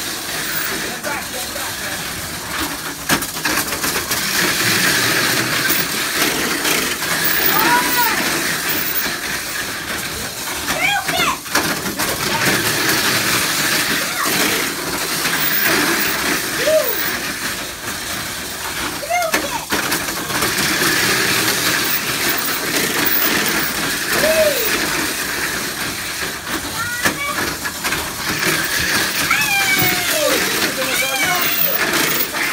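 Tamiya Mini 4WD cars racing around a multi-lane track: a steady, high-pitched whir from their small electric motors. Short calls from people's voices come in now and then.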